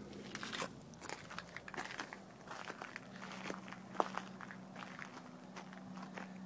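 Footsteps crunching on gravel, with small irregular clicks of camera handling, over a faint steady low hum.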